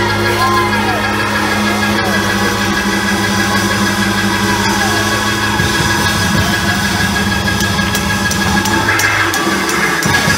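Loud live church praise music with a low chord held steadily until near the end, and voices calling out over it.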